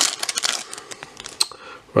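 Foil wrapper of a Panini Select football card pack crinkling and crackling as it is torn open by hand, a rapid run of crackles that dies away after about a second and a half.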